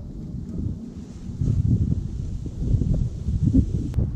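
Wind buffeting the camera microphone, a low rumble that swells and fades in gusts. A single sharp click just before the end.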